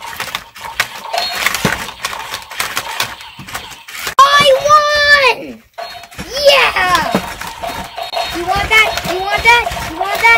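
Two remote-control toy battle robots fighting: rapid clicking and plastic clattering of their geared motors and swinging punch arms. A child's voice calls out over it several times, with a long held call about four seconds in.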